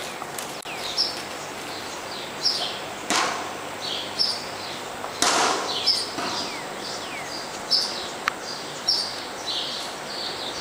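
Small birds chirping over and over, short high chirps mixed with quick downward-sliding calls. Two louder noisy whooshes cut in about three and five seconds in.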